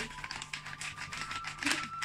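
Plastic bag of rice flour crinkling in a quick run of rustles and crackles as it is shaken and squeezed to empty it into a bowl.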